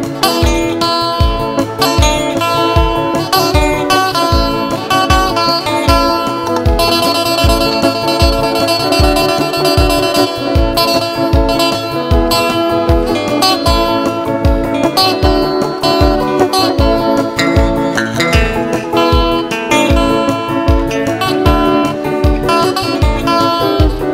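Live instrumental worship music: an electric guitar playing sustained melodic lines over a steady low beat.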